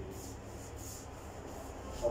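About five light, quick rubbing strokes as wallpaper glue is spread onto a surface.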